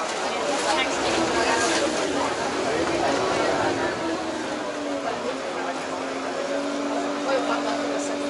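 Vaporetto water bus under way: steady engine drone with a rushing wash of water and wind, and passengers talking over it. The engine hum settles onto one steady note in the second half.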